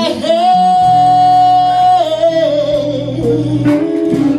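Live blues band with a woman singing. She holds one long high note for about two seconds, then lets it slide down, over electric guitars and drums.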